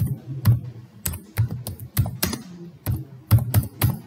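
Typing on a computer keyboard: separate keystrokes at an uneven pace, about three a second.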